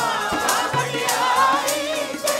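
Sikh devotional singing (Gurbani kirtan): a lead singer and the congregation singing together in chorus over a harmonium, with tabla strokes keeping a steady beat.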